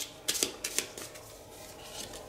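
Tarot cards handled in the hand: a few short crisp card clicks and flicks in the first second, then faint rustling.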